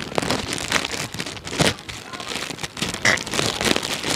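A clear plastic bag being crinkled and crumpled by hand right up against a clip-on lapel microphone: an uneven crackling with a few louder crunches.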